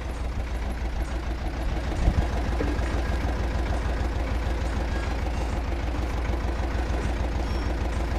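Tractor engine running steadily, with one short knock about two seconds in.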